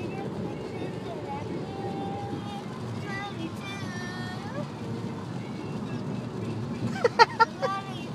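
A girl singing in a moving car, holding and bending wavering notes over the steady road noise of the cabin. About seven seconds in come a few short, loud yelps.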